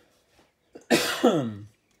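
A man coughs once about a second in, a harsh burst that falls in pitch as it dies away.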